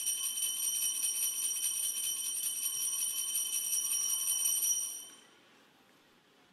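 Altar bells (Sanctus bells) shaken in a continuous jingling ring, marking the elevation of the consecrated host at Mass; the ringing stops about five seconds in.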